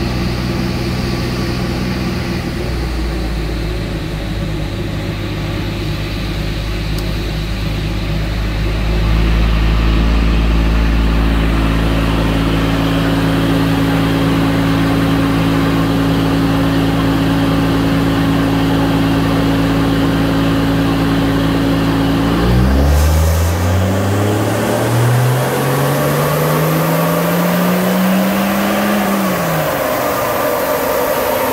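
Turbocharged Toyota 1HZ straight-six diesel running steadily under load on a chassis dyno. About three-quarters of the way through, its revs climb smoothly for several seconds in a dyno pull, then drop back off near the end. It is running on its base fuelling with no extra diesel, which leaves it lean.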